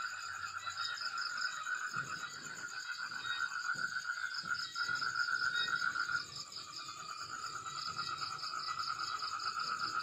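Night chorus of calling frogs and insects: a steady, finely pulsing trill in the middle range with a fainter, higher pulsing trill above it. The lower trill drops away briefly about six seconds in, then resumes.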